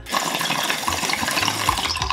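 Water bubbling steadily inside a glass bong as smoke is drawn through it during an inhale.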